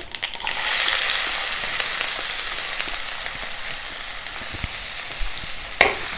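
Chopped onions dropped into hot oil in a nonstick kadai, sizzling hard at first and slowly dying down, with a wooden spatula starting to stir them near the end.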